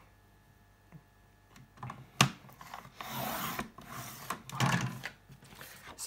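Sliding paper trimmer cutting a sheet of heavy cardstock. A sharp click about two seconds in is followed by a scraping slide of about three seconds as the blade is run along the rail.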